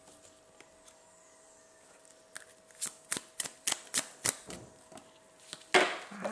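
A small deck of reading cards being shuffled and handled by hand: a quiet start, then a run of quick card flicks and snaps, with one louder burst near the end.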